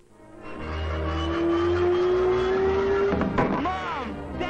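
Cartoon soundtrack over a scene change: music with a rushing, car-like speed effect underneath. A long note slowly rises and then breaks off a little after three seconds, with a short louder burst.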